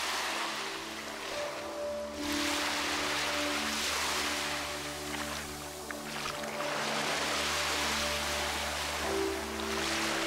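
Calm background music with steady held notes over small ocean waves washing up on a sandy beach. The surf swells and fades about three times.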